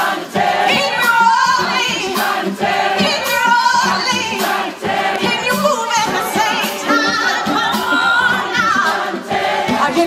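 A large crowd singing a repeated refrain together, many voices in chorus like a choir.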